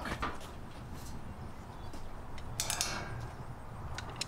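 Faint clinks and a rattle from a wrought-iron gate and its latch being handled, with a brief rustle near three seconds in.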